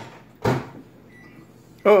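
A single hard knock about half a second in, with a short ring after it, followed by quiet room noise.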